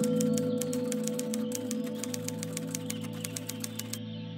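Typing sound effect: rapid, even keystroke clicks, several a second, as a line of text types out, over a sustained low music chord that slowly fades.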